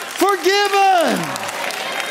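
A man's raised voice holding a long, drawn-out shout that falls away in pitch about a second and a half in, with applause from the crowd underneath.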